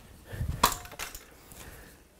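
A tennis racket being handled at the end of a forehand swing: a soft thump, then a sharp click just after it, and a lighter click about a second in.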